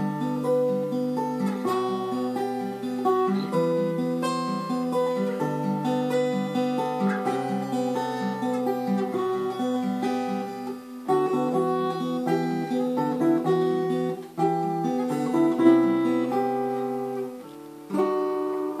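Solo acoustic guitar played by hand: a picked melody of single notes over sustained bass notes, in an even flow with a short drop in volume near the end.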